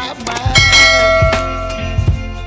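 A bell chime sound effect is struck about half a second in and rings on in several held tones until near the end, over background music with a beat.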